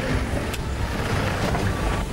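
A car running on rough ground, with a sharp click about half a second in.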